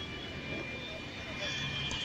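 Steady street background noise with distant voices, and the faint scrape of a perforated ladle stirring peanuts roasting in an iron wok.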